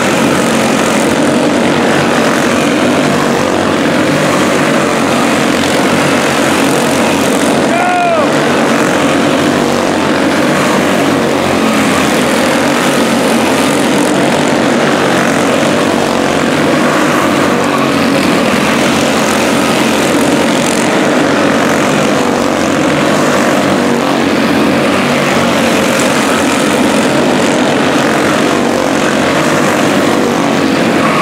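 A pack of quarter midget race cars with 160 cc single-cylinder engines running together at racing speed, making a steady, dense buzz that stays loud throughout.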